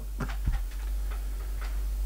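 A steady low hum with a few faint, short clicks in a gap between voices.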